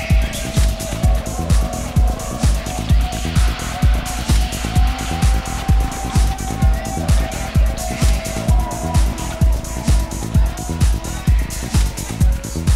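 Electronic dance music played from vinyl in a DJ set. A steady four-on-the-floor kick runs at about two beats a second under hi-hats and sustained synth tones, with a hissing swell of noise through the middle.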